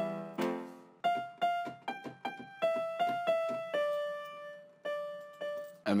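A melody played back from an FL Studio piano roll on a software instrument. A held chord fades out during the first second, then a single line of about a dozen short, quickly decaying notes steps up and down in the middle register.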